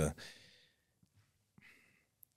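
A man's voice trails off, then a pause, and a short soft breath about a second and a half in.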